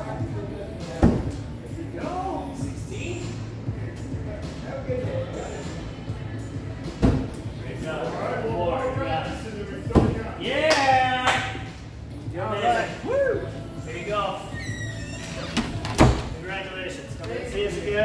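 Thrown axes striking a wooden target board: four sharp thuds several seconds apart, the first about a second in, over background voices and music.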